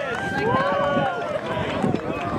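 Many voices outdoors calling and shouting over one another at once, none of them clearly in the foreground.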